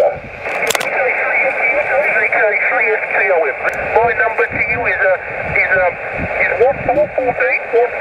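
A station's voice received on 2 m SSB through a Yaesu FT-817ND's speaker: narrow, tinny speech over steady band hiss. There is a sharp click just under a second in.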